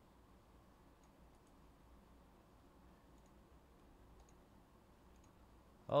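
Quiet room tone with a low hum and a handful of faint, scattered clicks.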